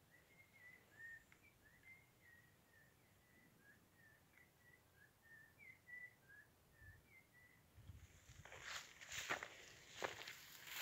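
Faint, short high chirps from a small bird, two or three a second in an irregular string, over near silence. From about eight seconds in, footsteps rustle and crunch through dry brush, growing louder.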